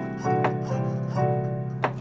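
Keyboard playing alternating C major and D major triads over a held C dominant seventh chord, the upper chord changing about every half second while the low notes hold underneath. A couple of sharp clicks come through, one near the end.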